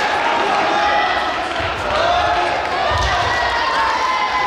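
Raised voices of coaches and spectators in a gymnasium during taekwondo sparring, with low thuds from the bout, the strongest about three seconds in.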